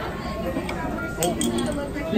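Indistinct talking in a shop, with a few light clicks and clinks.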